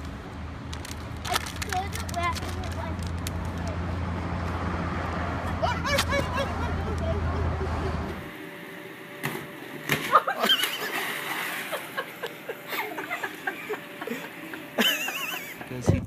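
Voices outdoors over a low steady rumble that stops abruptly about eight seconds in, followed by voices and calls with splashing water on an inflatable water slide.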